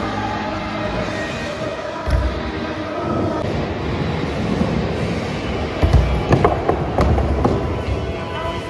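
Background music over the rolling of a BMX bike on a concrete skatepark floor. About six seconds in come a run of heavy thumps and clattering clicks, the loudest sounds here, as the rider bails and the bike falls to the ground.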